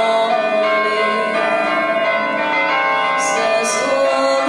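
Electronic carillon played from a keyboard, its bell voices sampled from the Liberty Bell (Laisvės varpas). Several bell tones ring and overlap, sustained and changing pitch, with two short high hisses near the end.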